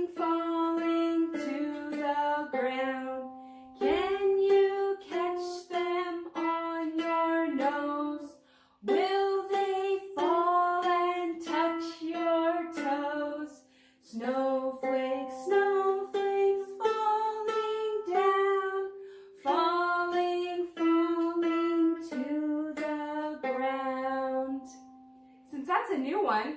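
A woman singing a children's song about snowflakes, with a ukulele strummed along, in sung phrases a few seconds long separated by short breaks.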